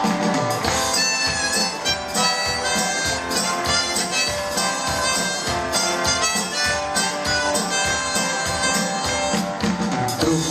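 Harmonica played in a neck rack over a strummed acoustic guitar: an instrumental harmonica break in a folk song, the harmonica's notes bending and sliding over a steady strum.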